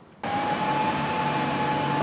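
A steady mechanical drone with a high, constant whine over it, cutting in suddenly about a quarter of a second in.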